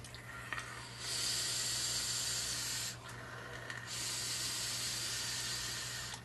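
Hiss of a long draw on a box-mod vape with a dripping atomizer, air rushing through the atomizer's vents as the coil fires, in two pulls of about two seconds each with a short break between.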